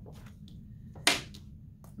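Quiet room noise with one sharp clack about a second in, as a phonics card is stuck onto the whiteboard with a magnet.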